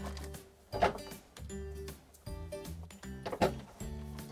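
Light background music, with a few soft knocks and clicks from toy kitchen items being handled, the clearest about a second in and again near the end.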